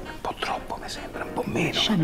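Hushed, whispered speech spoken close up.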